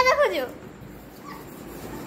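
A child's short, high-pitched shout at the start, falling in pitch, followed by faint background noise.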